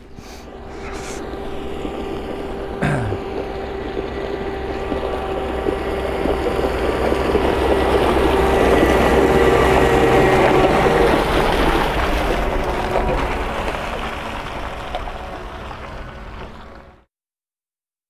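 A New Holland tractor towing a twin-axle tipping trailer drives past on a gravel track: steady engine running with tyre noise, building to loudest about halfway through as it passes close, then fading. The sound cuts off suddenly about a second before the end.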